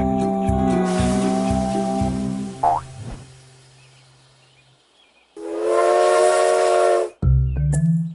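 A held music chord fading out over the first three seconds, then a cartoon toy train's steam whistle blowing over a hiss of steam for under two seconds. Near the end comes a springy boing sound effect for the cartoon kangaroo's hop.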